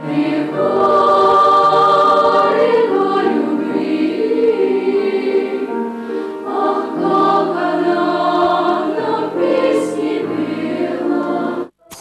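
Girls' children's choir singing together in several parts, holding long notes. There is a short breath between phrases about halfway, and the singing stops just before the end.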